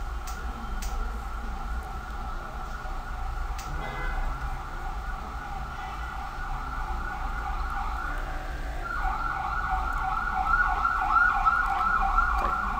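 A siren-like high tone, held steady at first. About nine seconds in it breaks into a fast, repeating warble and grows louder. A low electrical hum runs underneath.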